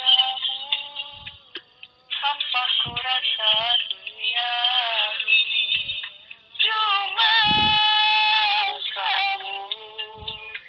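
Dangdut song: a singing voice holds long, wavering notes in phrases over occasional deep drum beats.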